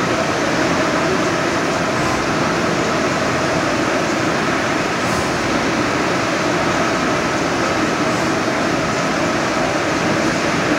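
EFI VUTEk HS100 Pro UV LED inkjet printer running while printing on roll media: a steady mechanical whir with fan noise, and a faint hiss that comes back about every three seconds.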